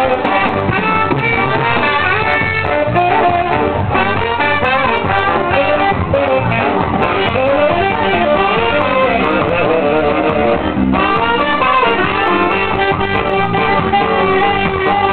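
Live ska band playing, with a horn section of trombone, trumpet and saxophone over drums.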